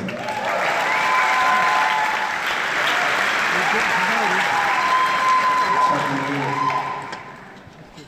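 A concert audience applauding and cheering a performer's introduction, with voices mixed in; the applause dies away from about seven seconds in.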